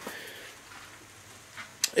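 A short pause in a man's talk: faint hiss that fades over the first second and a half, then a brief mouth click just before he speaks again.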